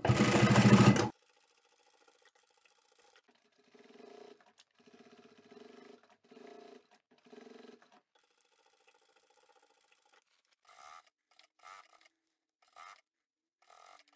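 Electric sewing machine stitching in one loud burst in about the first second, top stitching through the layers of a fabric bag. After that only faint, short intermittent sounds follow.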